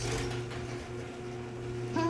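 A motor running steadily, giving a constant low drone with a steadier higher tone above it.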